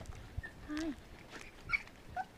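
Silken Windhound puppies giving short, high whimpers: one brief one about half a second in and a sharper squeak near the end.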